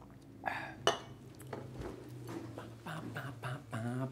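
Two sharp clicks about half a second and a second in, then scattered small handling noises, and near the end a man's wordless voice sounds over a low steady hum.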